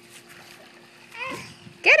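Light splashing and lapping of pool water as a toddler reaches into it at the pool's edge. There is a short voice sound about a second in, and a loud call of "Get" at the very end.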